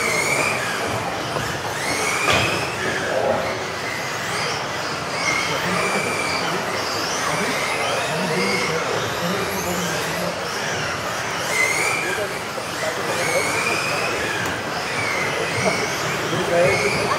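Several electric RC off-road buggies of the modified (brushless motor) class racing on an indoor track, their motor whines rising and falling again and again as they accelerate and brake, echoing in a large sports hall.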